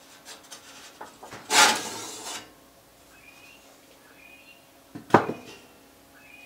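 Perforated sheet-metal lid of a vintage battery charger's case scraping and rattling against the case as it comes off, then a single sharp metal clank near the end.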